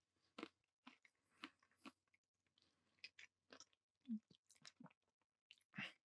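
Near silence, broken by faint short clicks close to the microphone, the loudest about four seconds in and just before the end.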